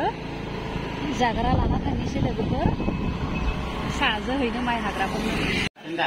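Road noise while riding on a motorcycle: the engine is running, wind buffets the microphone, and voices talk over it. The sound cuts off abruptly near the end.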